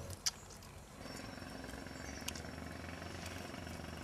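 A faint, steady low mechanical hum, like an engine running at a distance, setting in about a second in, after a single sharp click near the start.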